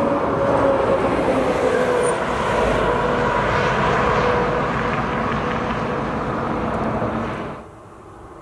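Highway traffic passing close by: a car, then a heavy truck with a drawbar trailer, a steady rush of engine and tyre noise on asphalt. It drops abruptly to a much quieter background near the end.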